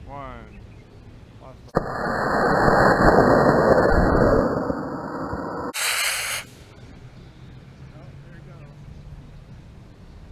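Model rocket launch: an Estes Tazz on a B6-4 black-powder motor ignites about two seconds in with a sudden loud rushing blast that runs for about four seconds. It ends in a shorter, hissier burst and then cuts off.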